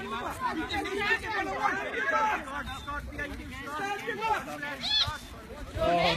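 Several voices chattering and calling out over one another, with a high call about five seconds in.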